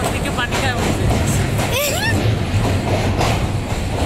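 Passenger train running over a steel truss bridge, heard from inside a carriage: a steady low rumble of wheels on the rails, with people's voices over it.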